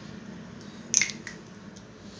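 A single short spray from a small perfume atomizer bottle about a second in, followed by a couple of faint handling clicks.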